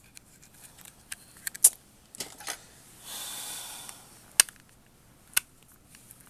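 Hands working at a small taped cosmetic package: scattered sharp clicks and snaps of the packaging, then about a second of tape being peeled and torn about three seconds in, followed by two more single clicks.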